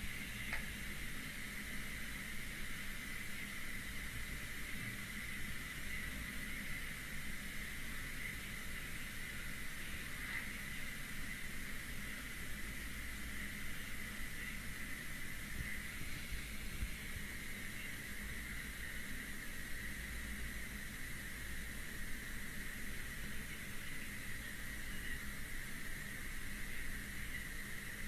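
Steady background hiss and low hum with a faint constant high whine, with no distinct sound events: microphone and room noise on a live video call.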